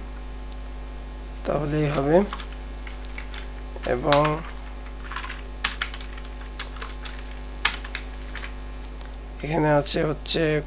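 Scattered computer keyboard key clicks over a steady low electrical mains hum. Three short vocal murmurs, about two seconds in, about four seconds in and near the end, are the loudest sounds.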